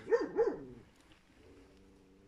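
A dog barks twice in quick succession in the background, followed by a faint steady tone.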